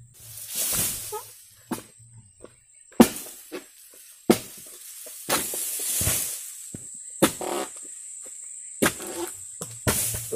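Oil palm being harvested at the trunk: a few sharp knocks, the loudest about three seconds in and just after four seconds, with spells of rustling from dry palm fronds.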